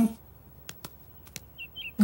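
Two short bird chirps near the end, after a few faint clicks.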